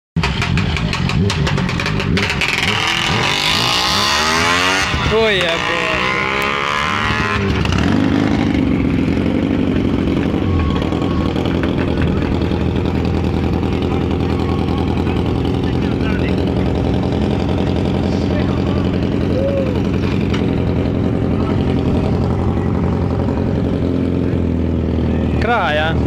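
Vintage racing motorcycle engines running loud. They are revved up and down for the first several seconds, then settle to a steadier running note, with another short rev near the end.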